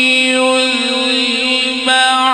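A male qari's voice in melodic Quran recitation (tilawat), holding one long drawn-out note at a nearly steady pitch, with a new phrase starting near the end.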